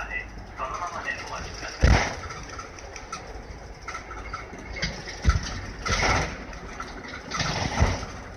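Isuzu PDG-LV234N2 city bus's diesel engine idling steadily, with several short bursts of noise and a couple of dull thumps over it.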